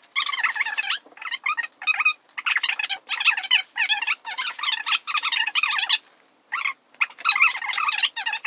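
A woman's voice played fast-forward, pitched up into rapid, high-pitched, unintelligible chatter, with a few short breaks, the longest about six seconds in.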